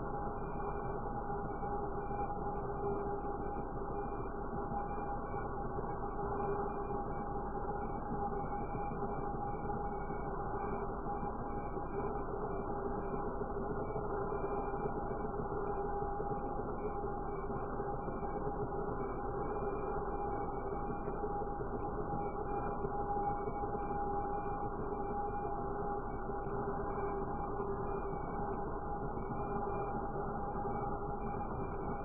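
Handheld angle grinder running steadily with its wheel pressed against a wet glass panel, wet-grinding a design into the glass: a constant whine over a grinding rush that does not let up.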